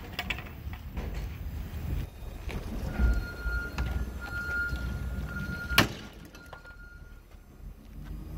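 A steel crowbar striking the front body of a 2007 Nissan Altima: a dull thud about three seconds in, then one sharp crack near six seconds. A faint high steady tone comes and goes through the middle.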